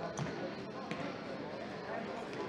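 A futsal ball being kicked and bouncing on a hard sports-hall floor, heard as two sharp knocks about a second apart.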